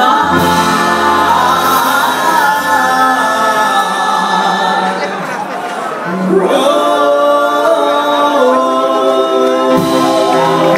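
A three-woman vocal group singing live, holding long notes together in harmony. About halfway through, the held chord thins briefly, then comes back in with a rising slide.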